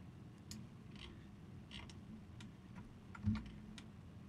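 Faint, irregular clicks of a computer keyboard and mouse, with one louder low thump a little over three seconds in.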